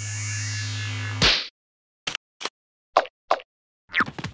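Electronic cartoon sound effect: a steady synthetic drone with sweeping tones for about a second, ending in a short loud swell and cutting off. A few brief squeaky chirps follow after a pause.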